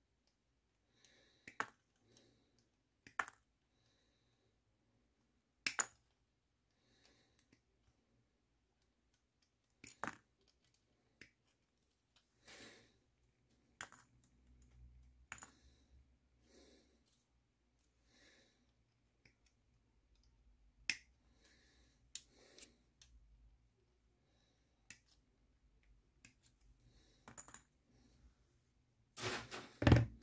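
Sprue cutters snipping plastic model-kit parts off the sprue: single sharp clicks, one per cut, spaced irregularly a few seconds apart with near quiet between them.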